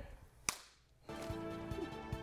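A single sharp hand slap, a high-five between two people, about half a second in. About a second in, music with a steady beat starts.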